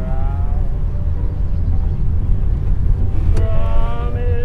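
Steady low rumble of a car engine and tyres on the road, as from a car driving along. A faint radio broadcast comes in over it just after the start and again near the end.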